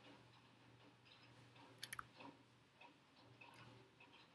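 Near silence: room tone with a few faint clicks, a quick pair about two seconds in, another just after, and one more near the end.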